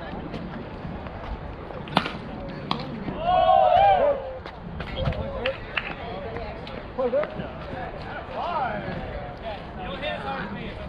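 A softball bat hitting the ball with one sharp crack about two seconds in, followed at once by loud shouting from the players, with more calls and chatter near the end.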